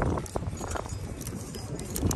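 Plastic clothes hangers clicking and sliding along a metal clothing rack as garments are pushed aside. The clicks come as a series of short, irregular ones over a steady low rumble.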